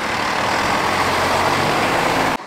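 Diesel engine of a water tanker truck running steadily as the truck drives away.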